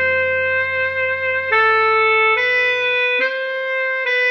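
Tenor saxophone playing a slow melody over a backing track: one long held note, then a few shorter notes that step down and back up.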